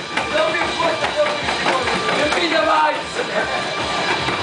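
Several men's voices talking over one another around a table, with music playing in the background.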